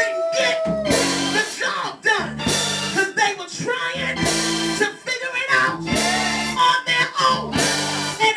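A preacher's amplified voice singing into a microphone over live instrumental church music, with sustained chords underneath and the voice sliding up and down in pitch.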